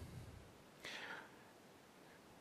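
Mostly quiet, with one short breathy hiss about a second in: a man's exhale or whispered sound close to a headset microphone.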